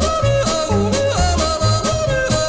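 Polka band recording with yodeling that leaps in pitch over an accordion-led band, an oom-pah bass and a steady beat.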